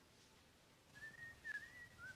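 A faint, thin whistle that wavers slightly in pitch, starting about a second in after near silence.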